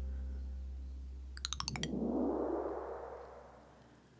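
Outro sound design: a low synth bass note slowly fading out, broken about a second and a half in by a rapid run of ticks, then a whoosh that swells and dies away.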